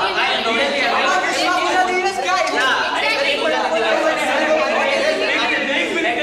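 Several people talking at once on a stage: overlapping chatter of voices in a large hall.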